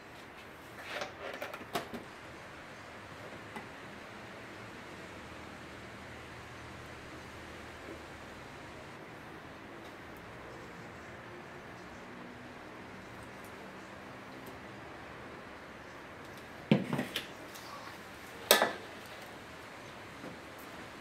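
Stainless steel mixing bowls and utensils briefly clattering and knocking as whipped cream is portioned out: a short cluster of knocks about a second in, then two sharp knocks near the end. Between them only a steady low room hum.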